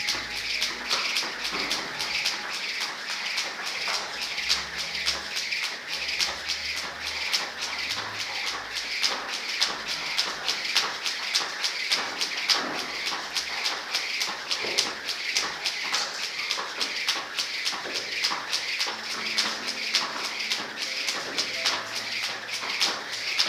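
Speed rope doing double-unders: the rope whirring round and slapping the floor in a fast, even rhythm of sharp ticks that never breaks.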